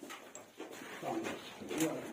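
Men's voices talking indistinctly at a low level in a small room, loudest near the end.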